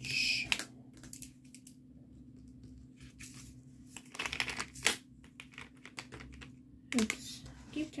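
Small clear plastic containers of diamond-painting drills clicking and rattling as they are handled in a plastic storage case. There is a short burst at the start, a longer clatter around the middle, and another burst near the end.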